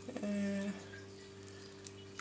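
A woman's brief held 'mm' or 'um', about half a second long, early on. After it comes a low steady hum in the room, with a faint click near the end.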